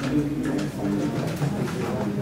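Indistinct, overlapping voices of students talking among themselves in a lecture hall while they work a problem.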